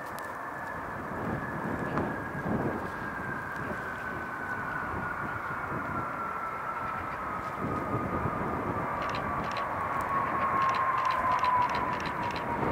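Jet airliner's engines whining on the runway, the whine dropping steadily in pitch as the engines spool down, over a low jet rumble. Gusty wind buffets the microphone, swelling a second or two in and again near the end.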